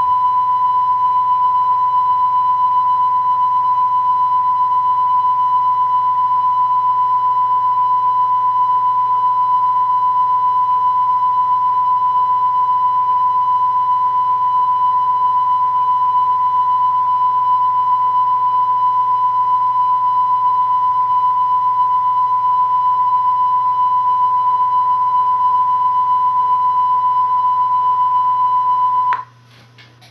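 A steady, high-pitched electronic test tone recorded on the end of a VHS tape, over a faint low hum; it cuts off abruptly about a second before the end, leaving faint tape noise.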